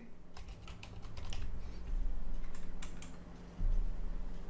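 Typing on a computer keyboard: a quick run of keystrokes in the first second and a half, then a few more about two and a half seconds in, over a low hum.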